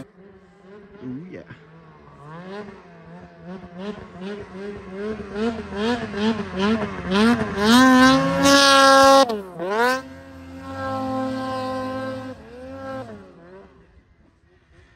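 Snowmobile engine revving in quick throttle pulses as it ploughs through deep powder, growing louder to a peak about eight to nine seconds in. Its pitch then dips sharply, it runs on more steadily, and it fades out near the end.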